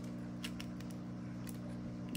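Small gravel pebbles clicking a few times as they are pressed by hand around a plant stem in a small plastic cup, over a steady low hum.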